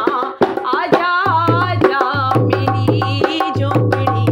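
A woman singing a devotional bhajan in a wavering, ornamented voice while playing a dholak with her hands. The drum keeps a steady rhythm with a deep bass, which drops out briefly near the start.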